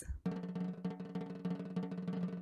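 Drum roll: a fast, even roll of drum strokes, starting a moment in.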